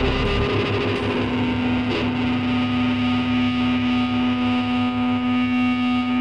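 Live rock band with guitar and synthesizer playing an instrumental passage with no singing; a single note is held steadily from about two seconds in over a pulsing low part.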